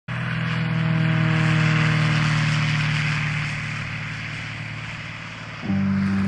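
A light aircraft's propeller engine running at a steady pitch, fading down through the second half. Near the end a held music chord comes in.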